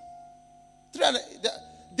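A soft, steady held note of background music, with short clipped voice sounds breaking in about a second in.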